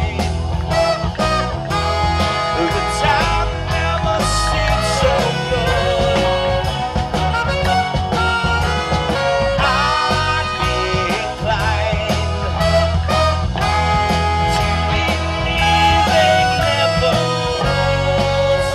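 Amplified live band playing an upbeat song, with trumpet and saxophone over electric guitar and drum kit, at a steady loud level.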